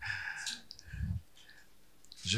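Paper draw slip being unfolded and handled close to a table microphone: rustling and small clicks, with a soft low thump about a second in.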